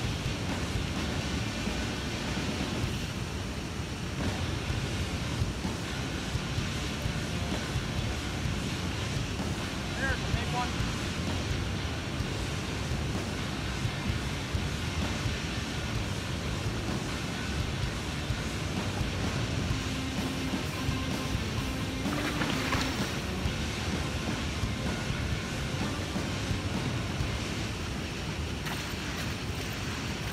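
Steady rush of river current around wading legs, with wind buffeting the microphone.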